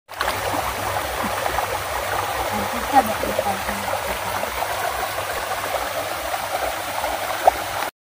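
Shallow rocky stream running over stones in a steady rush of water, with small gurgles and splashes.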